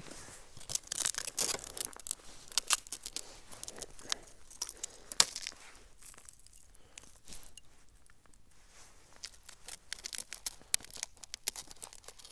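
Irregular clicks, crackles and rustles of hands working a plastic bait box and groundbait while loading a feeder, busiest in the first few seconds and again near the end.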